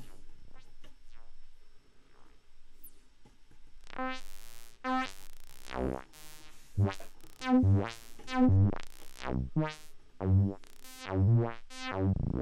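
Synthesizer notes played through Steve's MS-22, a Korg MS-20-style Eurorack filter. The first four seconds are quiet and sparse. From about four seconds in comes a run of quick notes, each sweeping from dull to bright and back as the filter opens and closes.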